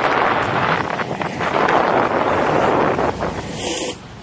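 Wind rushing over the microphone of a camera moving at skating speed, mixed with the steady roll of inline skate wheels on asphalt. A brief sharper hiss comes near the end.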